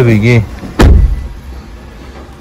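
A car door shutting: one heavy thump just under a second in.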